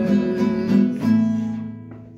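Guitar strummed in a few chords, the last one, about a second in, left to ring and fade away.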